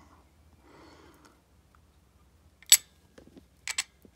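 Small clicks of a stainless-steel watch caseback being fitted by hand onto the case of a Wenger Field watch: one sharp click about two-thirds of the way through, then a few lighter clicks near the end.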